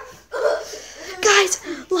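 A child's voice making short breathy vocal sounds without clear words: a brief one early and a louder, longer one about a second in.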